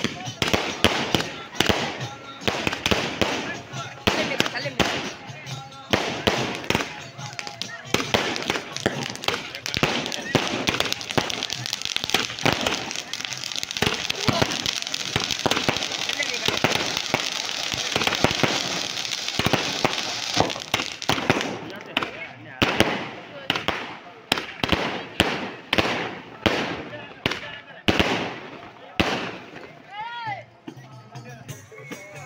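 Fireworks going off: rapid cracks and pops of aerial shells and firecrackers, with a denser, steadier crackling hiss in the middle as ground fountain fireworks spray sparks. Separate sharp bangs resume near the end.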